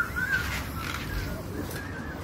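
Strong gusting wind from a tornado coming ashore, buffeting the microphone with a rough, steady rumble. Short high calls cut through it near the start and again about half a second and two seconds in.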